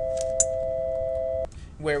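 A steady electronic tone of two pitches sounding together, held and then cutting off suddenly about one and a half seconds in, with a small click partway through.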